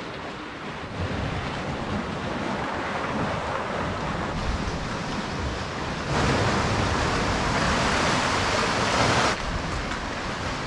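Sea surf washing and surging through a narrow rocky gully below the cliffs, with wind buffeting the microphone. The rush grows louder from about six seconds in and drops back abruptly just after nine.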